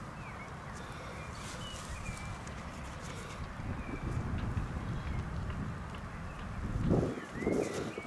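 Gloved hands scraping and rustling through damp soil and grass, digging a coin out of a small hole. The sound gets louder for a moment about seven seconds in, and a few faint bird chirps are heard behind it.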